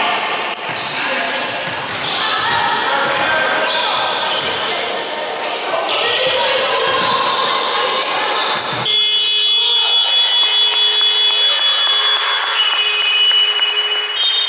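Indoor basketball game: voices calling out and a basketball bouncing on a hardwood court, echoing in a large sports hall. About nine seconds in, the low sound drops away and a few steady high-pitched tones hold for several seconds.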